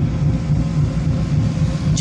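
Inside a moving car's cabin: the engine and tyres give a steady low rumble as the car drives slowly along a road.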